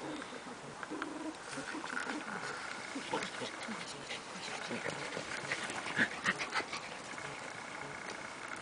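Shetland sheepdog puppies and adult dogs at play: scattered small yips and whimpers, with a few sharper short sounds close together about six seconds in.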